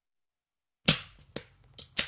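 Silence, then about a second in a few sharp knocks on a wooden door at uneven spacing. The first knock is the loudest and rings briefly.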